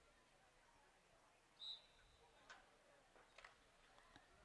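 Near silence, broken about one and a half seconds in by a brief, faint, high-pitched whistle-like tone that trails off, and a couple of faint clicks later on.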